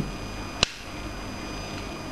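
A single sharp click about half a second in, typical of a switch on the coilgun's control panel being flipped, over a steady electrical hum.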